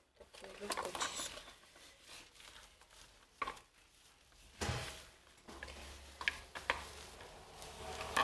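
Gloved hands working wet, lightener-coated hair in a salon shampoo basin, making soft wet squishing and rubbing sounds with a few small clicks. The lightener is being emulsified with water on the hair. A low steady hum sets in about halfway through.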